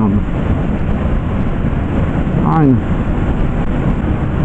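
Steady wind rush on a motorcycle helmet intercom microphone while riding, heard through the intercom's narrow, muffled audio. One short spoken word about two and a half seconds in.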